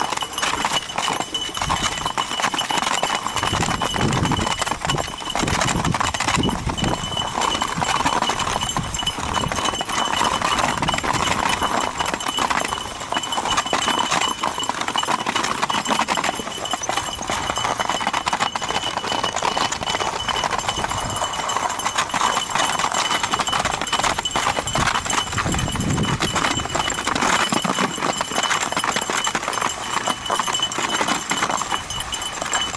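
Nordic skate blades scraping and hissing over lake ice while two dogs tow the skater, with a steady run of clicks and scratches from their feet on the ice. Low rumbling swells come and go a few seconds in and again near the end.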